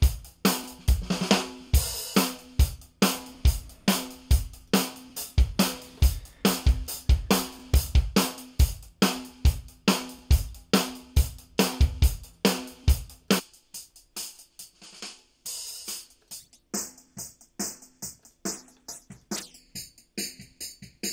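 Drum-kit loop playing with kick, snare and hi-hats, the hi-hats fed through the u-he Satin tape machine plug-in's tape flanger. A little past halfway the kick and snare drop out, leaving the flanged hi-hats playing alone.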